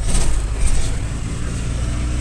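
Steady low rumble of a van's engine and tyres heard from inside the cabin while it drives along, a little louder just after the start.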